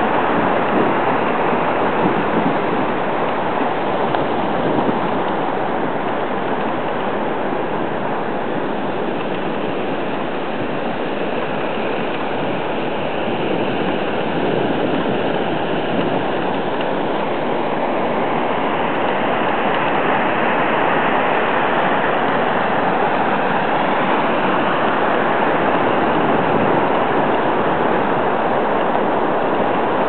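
Steady, even rushing noise with no distinct events, slightly softer around the middle.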